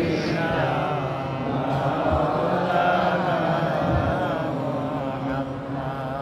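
Men's voices chanting an Islamic devotional melody, a salawat on the Prophet, in long, drawn-out wavering phrases without a break.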